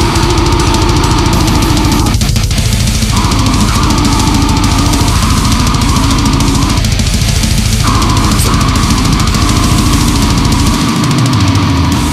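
Instrumental passage of a heavy metalcore/deathcore recording: loud, distorted, down-tuned guitars over drums with a fast, driving low end. The low end drops out briefly near the end.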